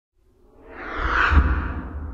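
A whoosh sound effect swells up out of silence with a low rumble under it, peaks about a second and a half in, then fades away, as an intro sting for a logo.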